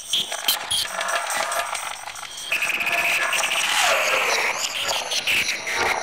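Tape-collage musique concrète: dense, layered tape-manipulated noises full of sharp clicks and abrupt splices. It grows louder and hissier about halfway through, with a falling pitch glide near the end.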